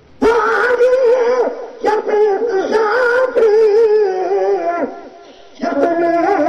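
A man singing a Sindhi Sufi kafi solo, in long held, ornamented notes with a wide vibrato. One phrase ends a little before the five-second mark and the next begins after a short breath.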